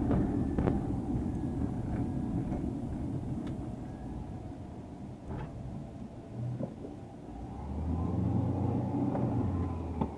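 Car running along the road, heard from inside the cabin: a steady low rumble of engine and tyres that fades as the car slows toward a stop, then grows louder again over the last two seconds, with a few faint clicks scattered through.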